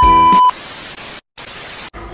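TV test-card transition effect: a loud, steady high test-tone beep for about half a second over the last notes of ukulele music, then TV static hiss that drops out briefly in the middle and cuts off just before the end.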